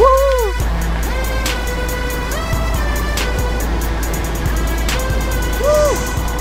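Electronic background music with a steady beat over sustained notes, and a sliding note that swoops up and back down at the start and again near the end.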